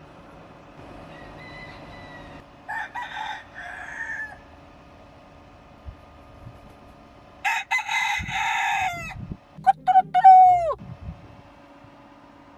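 Rooster crowing at close range: a fainter call near the start, a crow about three seconds in, then a louder crow in the second half followed by the loudest call, which drops sharply in pitch at its end. A steady faint hum runs underneath.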